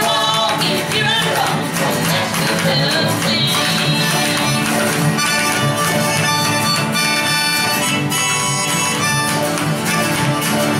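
Small acoustic country band playing an instrumental passage: acoustic guitars strumming with spoons clicking out the rhythm, and a lead line sliding in pitch over the first few seconds.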